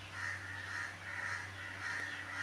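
A bird calling over and over, short faint calls about twice a second, over a steady low hum.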